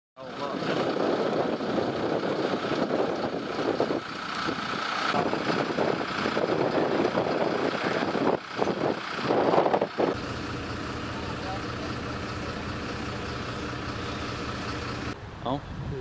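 MAN fire engine's diesel idling, with wind gusting on the microphone. About ten seconds in, the sound cuts to a steadier, even engine hum.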